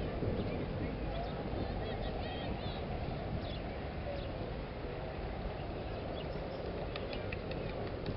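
Steady outdoor background noise with a low rumble like wind on the microphone, a faint murmur of voices, and a few short high chirps about two to three seconds in. There are light clicks near the end. The cannon is not fired.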